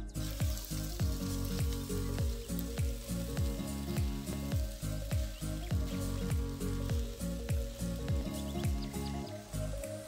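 Fried rice sizzling in a hot wok as it is stir-fried with a spatula, under background music with a steady, deep bass beat.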